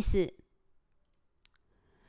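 A voice finishing a word, then near silence with a faint single click about one and a half seconds in.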